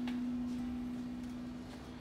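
A steady low hum on one held tone, slowly fading toward the end.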